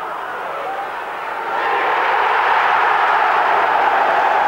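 Football stadium crowd cheering a goal, swelling louder about a second and a half in.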